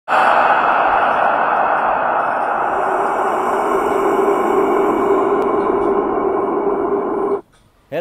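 Horror-style intro sound effect: a loud, steady rushing noise with a faint held low tone coming in partway through, cutting off abruptly about half a second before the end.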